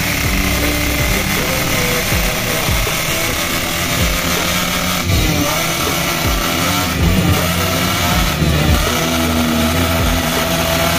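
Motocross dirt-bike engines running in a paddock, revving up and down now and then.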